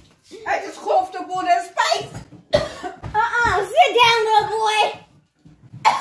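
A child's high-pitched voice, talking or exclaiming without clear words, breaking off briefly about five seconds in.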